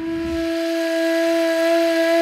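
Ney (end-blown cane flute) sounding one long, breathy sustained note, sliding up into pitch at the start and then held steady.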